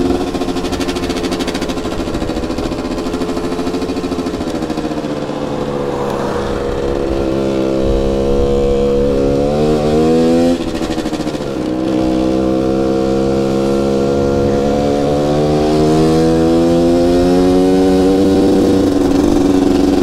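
Riju MRT 50 50cc moped engine running under way, its pitch slowly rising with speed. About halfway through the revs drop sharply and then climb again.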